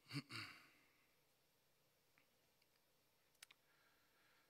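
A man's short, breathy vocal sound into a close microphone at the start, then near silence with two faint clicks about three and a half seconds in.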